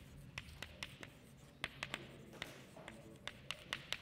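Chalk writing on a chalkboard: a faint, irregular run of light taps and short scratches as words are written.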